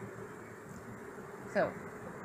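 Steady buzzing drone of flying insects under a faint outdoor hiss; a woman says a single word near the end.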